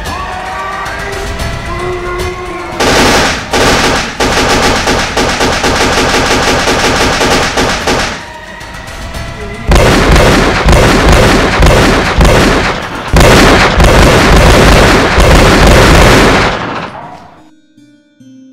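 Rapid gunfire sound effects over background music: two long volleys of quick shots, each a few seconds long, with a short lull between, dying away just before the end.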